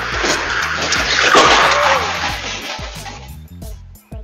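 A car skidding out of control on the road: a sudden loud, noisy rush that builds to a peak about a second and a half in and dies away over the next two seconds, recorded through a home security camera's microphone. Music plays underneath.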